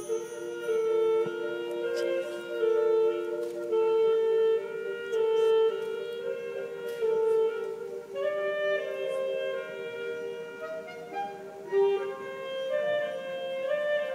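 Saxophone playing a slow melody of long held notes.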